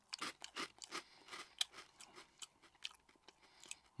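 Chewing a crunchy bacon-flavoured Frazzles corn crisp: many quick, irregular crunches, faint and close.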